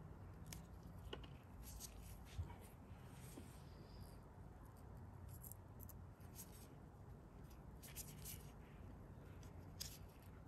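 Faint, crisp scratches and small clicks of a scalpel and gloved fingers picking dry roots and old leaf bases off a Haworthia rosette, a few short scrapes spread out over near silence.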